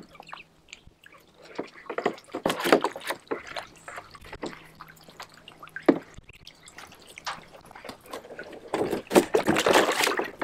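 Muscovy ducks splashing and sloshing water in a plastic kiddie pool as they dip their bills after feeder fish, in irregular bursts. Busy splashing a couple of seconds in, one sharp splash about six seconds in, and heavier splashing near the end.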